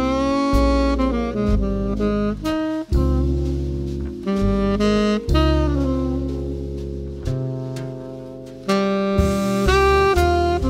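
Live small-group jazz: a saxophone plays a phrased melody line over upright bass, with drums played with wire brushes.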